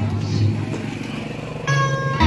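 Low steady drone under crowd noise, then near the end a funeral brass band begins playing with one held note.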